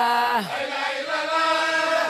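A group of voices chanting together in a repetitive sung religious chant. The sung line drops in pitch about half a second in, and the chant then carries on without a break.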